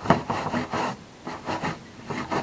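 A small hand tool scraping green corrosion off the metal rivets of a canvas web belt: a quick run of short rasping strokes, easing off briefly about halfway, then a couple more.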